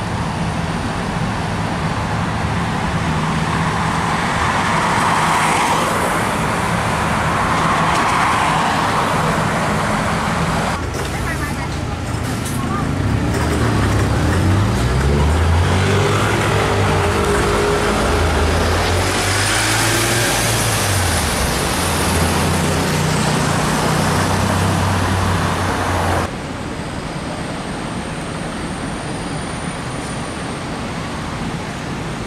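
Diesel engine of a MAN single-deck city bus pulling away, its note rising and falling several times as the gearbox changes up, amid road traffic.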